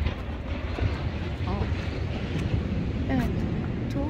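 Steady, uneven low rumble, with a few faint words of speech.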